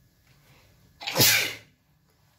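A person sneezing once, loud and sudden, about a second in and lasting about half a second.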